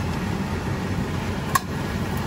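Puff paratha frying in oil in a non-stick pan, a steady sizzle, with one sharp click about one and a half seconds in as it is flipped with metal tongs.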